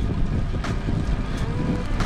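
Wind buffeting an action camera's microphone on a moving bicycle: a steady, loud low rumble.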